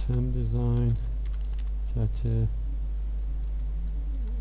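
Typing on a computer keyboard: scattered light key clicks as a line of text is typed, over a steady low hum.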